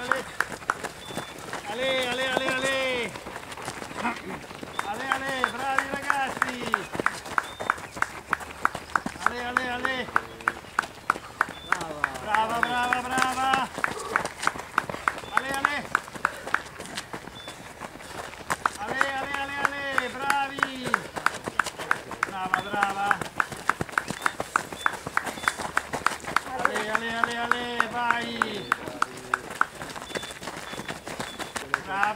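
A man shouting encouragement to passing runners in bursts of repeated, sing-song 'ale, ale' calls, over a steady rhythm of sharp slaps a few times a second.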